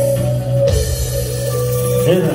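Live band music led by electronic keyboards holding steady sustained notes over a bass line, with drums; a bright crashing wash joins less than a second in.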